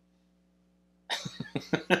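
Dead silence for about the first second, then a burst of breathy laughter in quick, sharp puffs.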